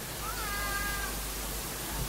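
A faint, high-pitched cry just under a second long that rises briefly and then holds steady, over a low steady hum.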